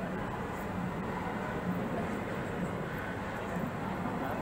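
Steady background noise: a low hum under an even hiss, with no distinct events.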